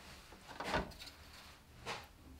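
Two faint, brief knocks about a second apart, from a brush and palette as watercolour paint is mixed.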